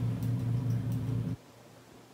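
A low steady hum with faint hiss, cutting off suddenly about a second and a half in to near silence.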